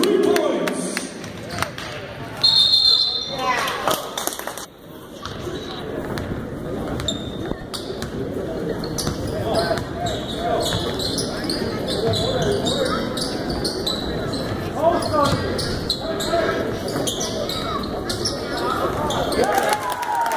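Basketball bouncing on a hardwood gym floor during play, over crowd chatter in a large echoing gym, with a short high whistle blast about two and a half seconds in.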